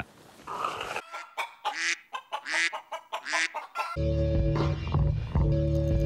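A comic sound effect of clucking animal calls, a run of short cries, plays over about three seconds. About four seconds in, background music with a steady beat and heavy bass starts.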